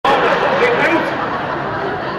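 Indistinct chatter: overlapping voices talking, loudest in the first second.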